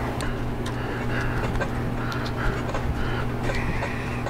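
A steady low electrical hum in a workshop, with a few faint small clicks from wire and pull string being fished out of a motorcycle handlebar tube.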